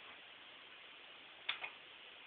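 Steady faint hiss with two sharp clicks close together about one and a half seconds in.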